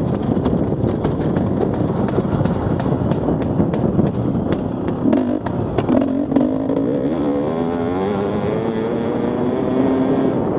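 Enduro dirt bike's engine running hard over a rough forest trail, with frequent short knocks and rattles from the bumps. In the second half the revs climb steadily as the bike accelerates.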